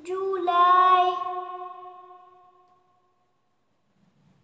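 A woman's voice singing the month name "July" as one drawn-out note. It steps up slightly in pitch about half a second in and then fades away over about two and a half seconds.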